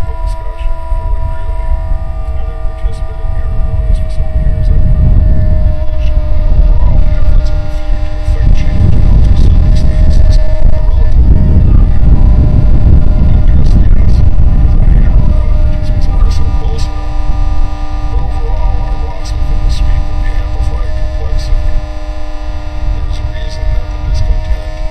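Experimental noise music made from processed tape recordings: a layered drone of several steady tones with scattered clicks. A loud low noise swells up a few seconds in, is strongest in the middle, and recedes about two-thirds of the way through.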